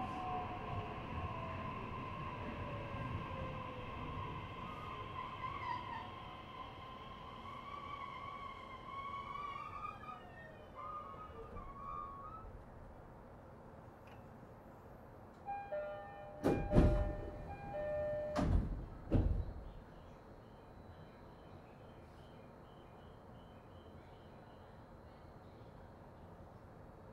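Inside the motor car of an E131-600 series electric train, the traction motor whine falls in pitch and fades as the train brakes to a stop. About sixteen seconds in, a two-tone chime sounds and the doors open with loud thuds, the loudest sounds here.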